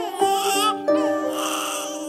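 A young child crying in short, wavering wails over background music with held notes.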